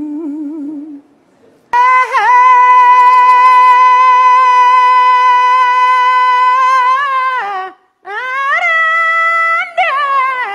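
A man singing unaccompanied in a high voice. A brief low hum is followed by one long high note held steady for about five seconds, which wavers as it starts and drops away at the end. After a short break a second, higher note is held.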